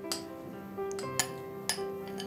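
Background music with sustained notes, over which a metal spoon clinks lightly against a glass bowl three times.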